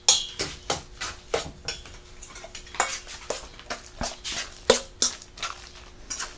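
Metal spoon scraping and clinking against a stainless steel mixing bowl as a thick cauliflower-and-egg batter is stirred, in quick irregular strokes.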